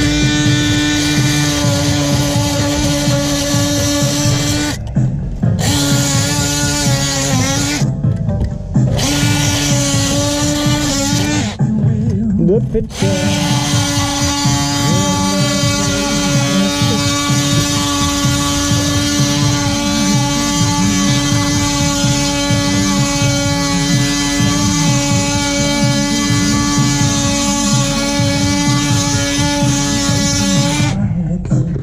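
Cordless DeWalt oscillating multi-tool cutting into the mortar of a brick joint, running with a steady high-pitched buzz. It stops briefly three times, about five, eight and twelve seconds in, then runs on without a break. The cut widens a tight perpend joint.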